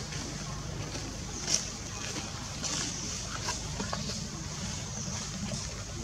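Empty plastic water bottle crackling and clicking as the monkeys grip and tug it, with one sharper crack about a second and a half in, over a steady outdoor hiss.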